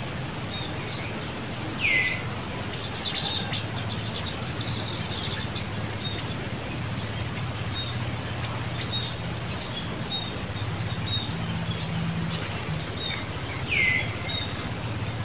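Birds calling: two loud whistled calls that sweep downward, one about two seconds in and one near the end, over frequent short high chirps.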